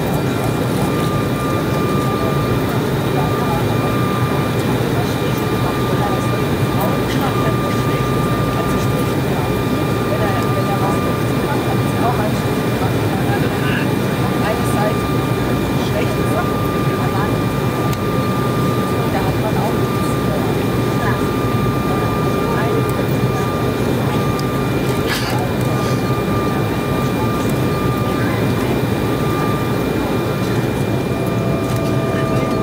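Steady cabin noise of an Embraer 190 airliner on final approach, heard from inside the cabin: airflow and the CF34 turbofan engines running, with several steady high whining tones over the noise. A new lower tone comes in near the end.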